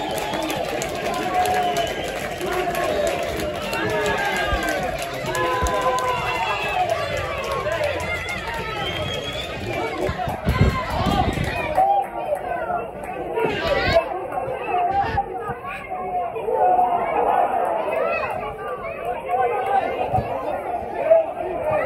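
A small crowd of football spectators talking and calling out over one another, with a brief low rumble about halfway through.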